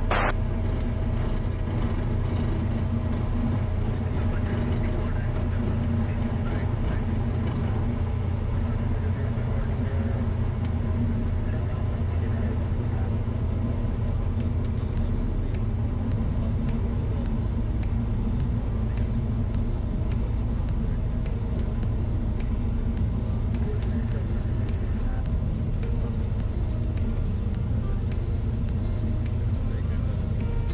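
Cessna's single piston engine running steadily at low taxi power, a constant low drone heard from inside the cockpit.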